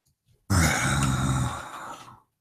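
A man's low, drawn-out wordless vocal sound on one steady pitch, starting about half a second in, loud for about a second and then fading away.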